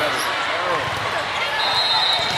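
Echoing sports-hall din from a busy indoor volleyball venue: voices from players and spectators, balls striking the floor on the courts, and a thin high whistle starting near the end.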